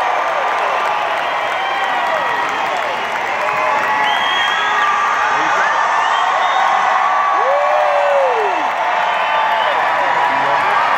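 Large concert crowd cheering and whooping, many voices shouting over one another, with one long rising-then-falling whoop about seven seconds in.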